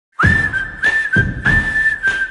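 A whistled tune over a drum beat, starting abruptly. Three short high phrases, each sliding up into a held note, each landing with a heavy low drum hit.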